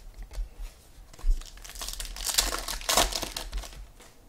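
Wrapper of a trading card pack crinkling and tearing as it is opened, loudest in the middle, after a few light clicks of cards being handled.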